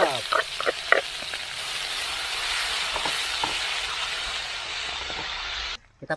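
Chopped chillies, garlic and red onion sizzling steadily in hot oil in a wok, with a few light clicks in the first second; the sizzle cuts off suddenly near the end.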